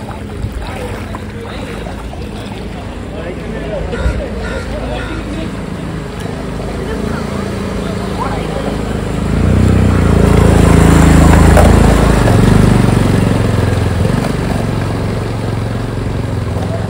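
A motorcycle riding through deep floodwater close by, its engine growing loud a little past halfway and then fading, with water washing around its wheels.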